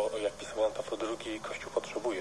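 Speech only: a voice talking on without pause, from a radio broadcast.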